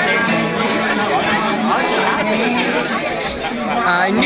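Live acoustic guitar music with audience chatter and talking over it.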